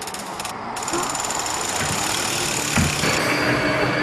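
A rushing noise that swells slowly, with a thin steady high whine through the middle, then sustained low tones entering near the end: an ominous sound-effect and drone build-up in an anime soundtrack.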